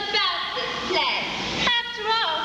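Actors' voices on stage: speech whose pitch sweeps up and down sharply, at about the loudness of the surrounding dialogue.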